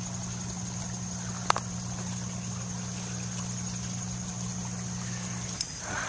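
A steady low mechanical hum with trickling water, under a high steady insect drone. A single sharp click comes about a second and a half in, and the hum cuts off shortly before the end.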